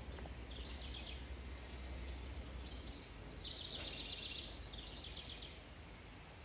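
Faint outdoor ambience of songbirds chirping, many short high notes overlapping. A low steady hum runs underneath for the first three seconds.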